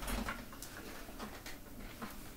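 Power wheelchair being driven forward: a faint low rumble near the start, with light rustling and a few soft clicks.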